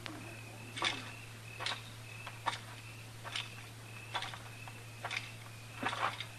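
Radio-drama sound effect of boots walking at a steady pace, about one step every 0.8 seconds, with spurs jingling after each step. A low steady hum runs underneath.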